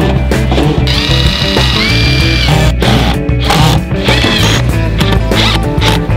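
Cordless impact driver running as it drives screws into a plastic pipe-clamp bracket, starting about a second in for roughly a second and a half and again briefly near the middle, under loud background music.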